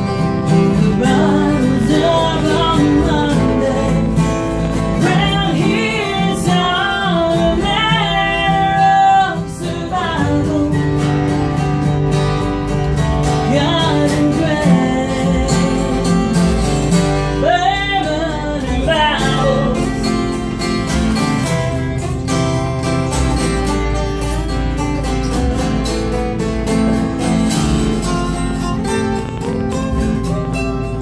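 Country song played live on two acoustic guitars, with a woman singing lead. The singing drops out about twenty seconds in, leaving the guitars playing on their own.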